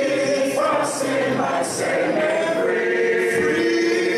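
A group of voices singing a hymn a cappella, holding long notes and moving together from note to note.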